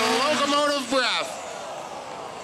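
A pro mod diesel pickup's engine running at high revs under load, then letting off about a second in and dropping to a much quieter low rumble as the pull ends.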